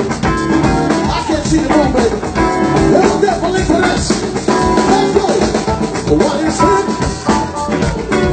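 Live band playing, with drum kit and electric guitars.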